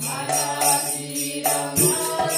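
Devotional kirtan chanting: voices singing a mantra over a low steady drone, with metallic jingling percussion keeping an even beat of about four strokes a second.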